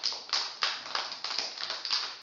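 A group of young children clapping together, a fast run of sharp claps.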